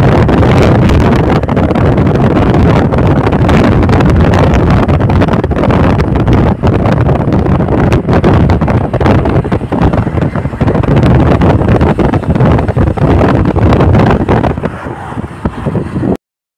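Loud wind rushing over the microphone together with the road noise of a vehicle travelling at speed. The noise eases and turns uneven near the end.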